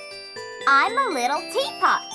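Children's-song intro music with chiming, bell-like notes. About halfway through, a high cartoon voice makes a wordless exclamation that swoops up and down in pitch, followed by a short falling swoop near the end.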